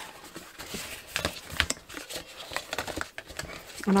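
Cardstock being folded by hand back and forth along its score lines, rustling against the mat with a few sharp crinkling clicks.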